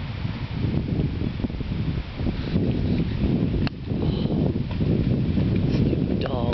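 Wind buffeting the microphone: a loud, uneven low rumble that rises and falls in gusts, with one sharp click about three and a half seconds in.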